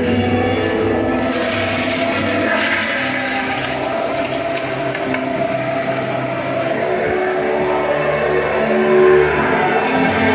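A toilet flushing: a rush of water starts about a second in and dies away over the next few seconds, with music playing underneath.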